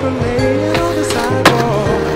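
A song with skateboard sounds mixed under it: wheels rolling on asphalt and one sharp clack of the board about one and a half seconds in.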